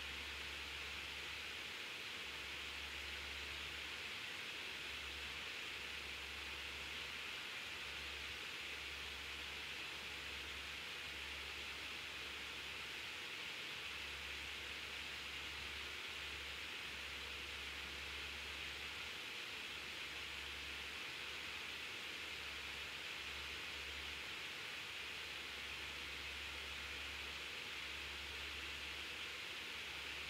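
Steady background hiss, with a low hum that cuts in and out every second or so.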